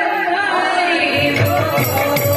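Kirtan group singing that tails off, then about a second in a two-headed barrel drum starts a beat and large hand cymbals strike along with it.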